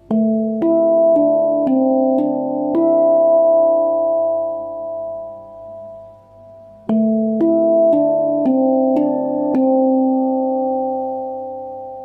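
D minor (Kurd) handpan played slowly, one note at a time: two phrases of six notes, about two strikes a second, each phrase left to ring out and fade. The first starts on the low A3 tone field; the second begins about seven seconds in.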